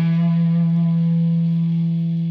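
Electric guitar playing a single held low note through the Satori pedal into a tube amp. The note rings steadily and fades slowly.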